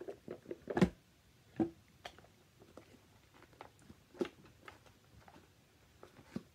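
Scattered taps, clicks and rustles of a deck of cards and its box being handled, the loudest a sharp knock about a second in.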